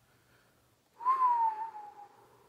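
A single breathy whistled note through pursed lips, starting about a second in. It lasts about a second, rising briefly and then sliding gently down in pitch.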